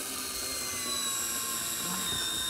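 Dessert Bullet frozen-dessert maker's electric motor running steadily with a whine, its pitch sagging slightly as frozen fruit is pushed down the chute and churned into frozen lemonade.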